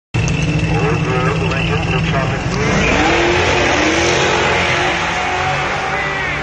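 Drag-racing cars launching off the start line: an engine holds a steady rev at first, then about two and a half seconds in the cars accelerate hard and the engine note rises again and again as they shift through the gears.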